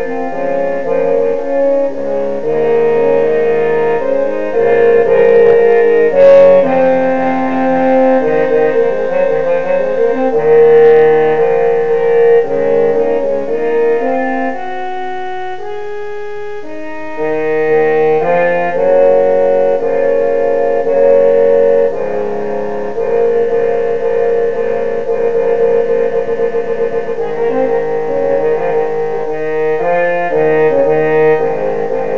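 Trombone playing a slow original piece in sustained, held notes, some with vibrato near the end. About halfway through the music drops to a quieter, thinner passage for a few seconds before the full sound returns.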